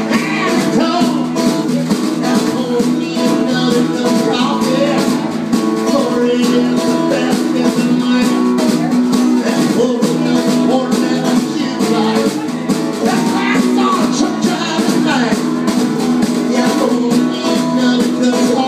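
Live honky-tonk country band playing: guitars over a steady beat, with some singing.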